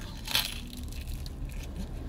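A bite into a slice of Detroit-style pizza: one crunch of the crust about half a second in, then chewing, over a low steady hum.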